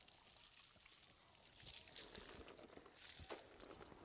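Near silence: faint outdoor ambience with a couple of faint clicks.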